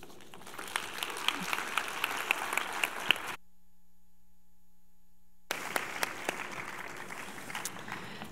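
Audience applauding. About three seconds in, the applause cuts out abruptly, leaving only a faint hum for about two seconds, and then comes back.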